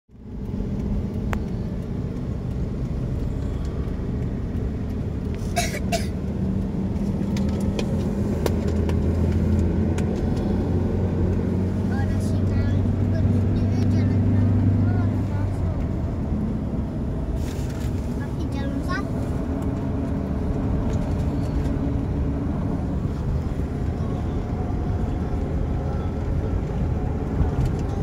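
Road noise inside a moving car at highway speed: a steady engine and tyre drone, with a deeper engine hum that swells for several seconds in the middle. A couple of brief knocks stand out.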